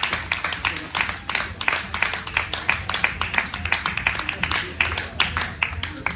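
Audience applauding: many hands clapping at once, thinning out near the end, over a low steady hum.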